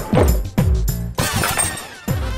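Dramatic background score with deep drum strokes falling in pitch, then about a second in a shimmering crash sound effect that fades out.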